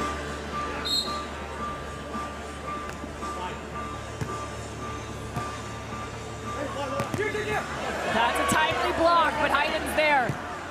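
Beach volleyball rally: a short whistle about a second in, then a few sharp slaps of hands on the ball. Over the last three seconds, overlapping shouts from players and crowd grow louder.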